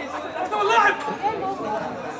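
Spectators chattering in a large indoor hall, with one voice calling out briefly just under a second in.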